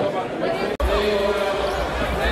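Voices and chatter, then after an abrupt cut a basketball being dribbled on a hardwood court, with low rumble and voices from the arena crowd.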